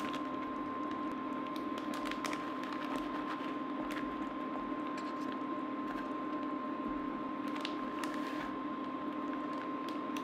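A spoon stirring thick, bubbling chili in an enamelled cast-iron pot, with soft squishing and scattered small clicks and pops. Under it runs a steady hum with a thin high tone.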